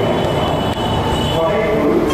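A man speaking into a pulpit microphone, his voice carried over a steady low rumble.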